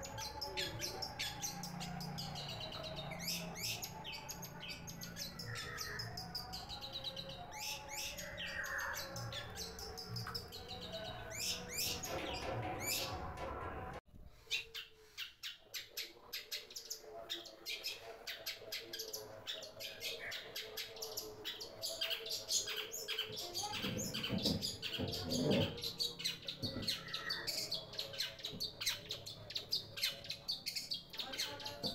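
Caged long-tailed shrike (cendet) singing a busy, chattering song of many quick, high notes, with a sudden break about halfway before it carries on.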